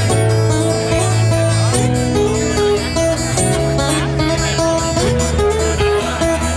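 Acoustic guitar played live, its chords ringing and changing every second or two.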